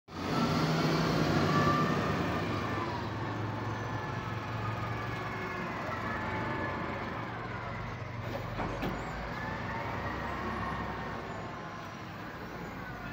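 XCMG wheel loader's diesel engine running under load, with a whine that slowly rises and falls in pitch as the machine works. It is loudest in the first couple of seconds, then settles to a steady level.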